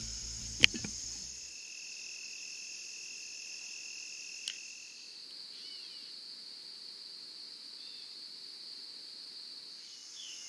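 Steady high-pitched chorus of insects, with one sharp click a little over half a second in. A single steady trill sits lower than the rest for the first few seconds, then stops.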